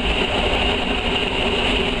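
Steady rumble and hiss of an ALn 663 diesel railcar running, heard inside its rear driving cab.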